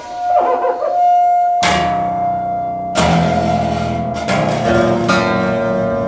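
Acoustic guitar in a free improvisation: four struck chords, about a second apart, each left to ring out. A long held note sounds over the first half and falls slightly in pitch.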